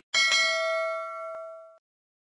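A single bell-like ding sound effect for a notification bell being clicked, ringing with several clear tones and fading for about a second and a half before it cuts off.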